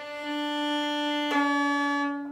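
Violin's open D string bowed in one long steady note while it is tuned with its peg, with a bow change about halfway through.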